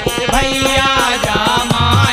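Bundeli folk bhajan: male voices singing to a harmonium, with regular dholak drum strokes and small hand-held percussion keeping time.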